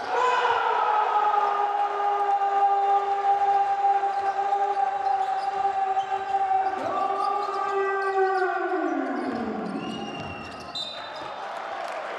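A loud siren-like tone in the arena, held at one pitch for about eight seconds and then winding down steeply in pitch, with a second similar tone sliding down from about seven seconds in.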